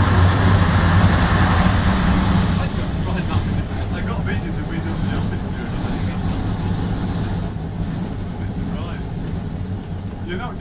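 A Leyland PD2 double-decker bus's six-cylinder diesel engine, running steadily as a low drone heard from inside the upper deck. The drone eases a little about two and a half seconds in.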